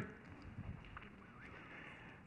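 Quiet pause: low room tone with a few faint taps.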